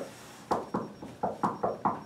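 Knuckles rapping on a conference table top: a quick run of about seven knocks, acting out a knock on a door.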